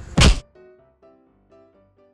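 A single short, loud thunk, like an edit sound effect, a fraction of a second in. It is followed by faint background music with separate held notes.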